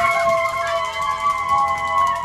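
Several party horns blown together, each holding a steady tone at its own pitch.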